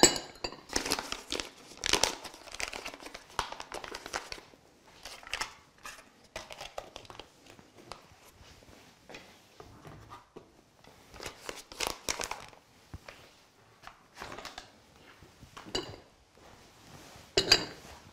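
Plastic margarine tub and packaging crinkling and rustling as margarine is emptied onto flour in a glass mixing bowl, with a sharp knock at the start and scattered clicks and rustles throughout.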